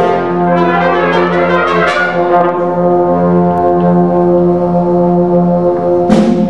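School big band of saxophones, trumpets and trombones with piano, bass and drums, playing a swing tune. Quick runs of notes give way about halfway through to the horns holding one long chord, which breaks off just before the end.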